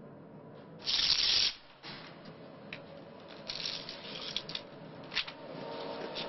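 Paper rustling as photographic prints are handled: one loud rustle about a second in, then softer shuffling and a click later on.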